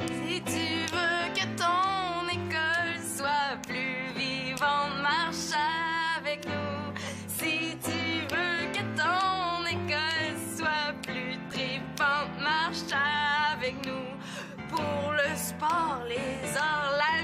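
A female voice singing a song over piano accompaniment.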